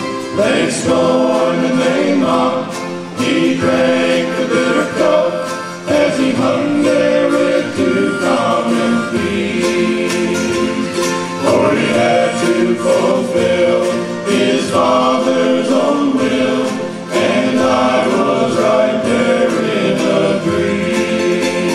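Men's gospel group singing in close harmony, backed by acoustic guitar, upright bass and harmonica, in phrases of a few seconds each.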